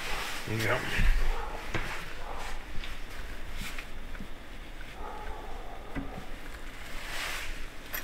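Metal seat swivel base and mounting frame being handled and fitted: scattered clunks, clicks and scrapes of metal parts, with one firm knock about a second in.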